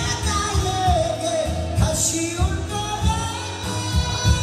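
A man singing a Korean trot song live into a handheld microphone over a karaoke backing track with a steady beat, holding a long note with vibrato in the second half.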